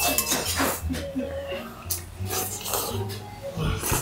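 A person slurping thick, chewy kalguksu noodles off chopsticks, in a series of short slurps. Light clinks of a brass bowl and utensils come between them.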